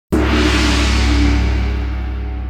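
One loud struck musical hit just after the start, with a deep ring that sustains and slowly fades: an opening sting.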